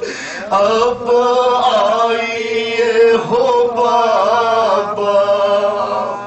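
Solo male voice chanting an Urdu noha (lament) into a microphone: long held, wavering melodic lines, with short breaths between phrases near the start and at the end.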